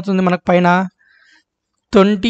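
A man's voice uttering two short, held syllables, then about a second of pause before speech starts again at the end.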